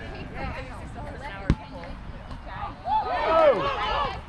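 Players and onlookers talking and calling out across an open field, louder near the end, with one sharp knock about a second and a half in.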